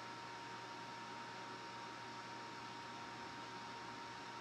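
Faint, steady hiss with a low hum and a thin, steady high tone: unchanging room tone, with no distinct events.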